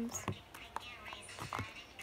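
Faint whispering, with a few soft clicks from hands at work.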